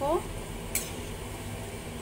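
Bottle-gourd koftas frying on a low flame in a kadhai of oil, with a steady sizzle. A slotted metal spoon stirs them and clicks once against the pan a little under a second in.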